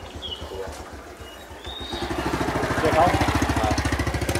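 A few short, high chirps from red-whiskered bulbuls in the first two seconds. Then, from about one and a half seconds in, a small engine with a fast, even pulse grows louder and becomes the loudest sound.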